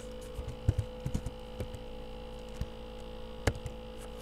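Steady electrical mains hum, with a few scattered clicks of computer keys. The sharpest click comes about three and a half seconds in.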